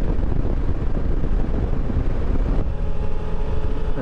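Wind rushing over the microphone and the running of a Suzuki V-Strom 650's V-twin engine while riding at road speed, a steady low rumble. About two-thirds of the way in the sound shifts and a steady hum comes in.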